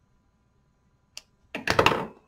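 Handling noise from picking up a small fabric-and-fibre bundle: one short click, then about half a second of rapid, loud crackling clicks near the end.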